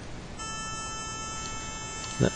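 A steady, buzzy 440 Hz square-wave tone at 10% duty cycle, played through the computer's audio output by the signal generator of a sound-card oscilloscope program. It switches on about half a second in.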